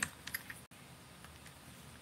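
A few light clicks from a baitcasting reel being handled on a rod's reel seat in the first half second, then only faint room hiss.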